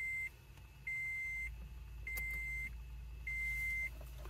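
Electronic beeps from a Bluetooth FM transmitter adapter, played through the truck's factory radio speakers while it waits for a phone to connect. It is a steady high tone about half a second long, repeating a little less than once a second.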